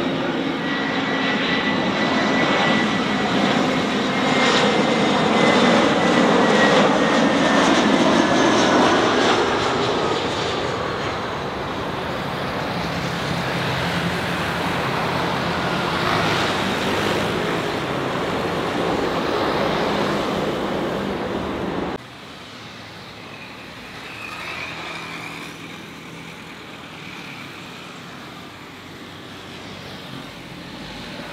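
Airbus A320-200 jet airliner landing: loud engine noise with a whine that falls in pitch as it passes close, then a steady rumble as it rolls out on the runway. About two-thirds of the way through, the sound cuts off suddenly to the fainter noise of a second jet airliner on approach.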